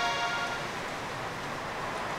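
The tail of a single note on a Casio SA-21 mini keyboard, dying away within the first half second, followed by a faint steady hiss.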